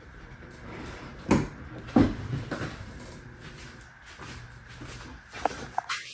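A few short knocks or thumps over faint steady background noise: one about a second in, another about two seconds in, and a small cluster near the end.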